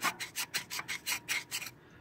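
A hand tool scraping rust and crud out of a water-rusted cylinder bore of a 6.0 LY6 V8 block: quick short rasping strokes, about six a second, stopping near the end.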